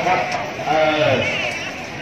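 People's voices with a wavering, drawn-out pitch.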